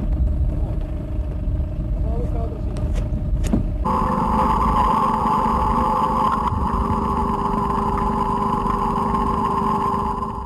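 A boat motor running steadily. About four seconds in the sound turns closer and louder, a steady hum over the running noise.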